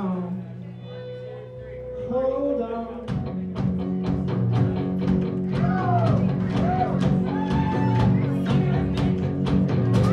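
Live rock band with electric guitars, keyboard and drum kit. For the first three seconds only held guitar and keyboard notes sound under a short sung phrase; then the drums and the full band come in with a steady beat, and the singer goes on in short lines.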